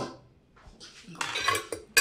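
Plates and cutlery clinking on a dining table as a meal is served. There are a few short clinks and scrapes from about a second in, and a sharper clink near the end.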